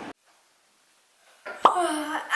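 A steady car-cabin hum cuts off at once, leaving near silence for over a second. Then comes a single short, sharp pop that drops quickly in pitch, running straight into a girl's voice.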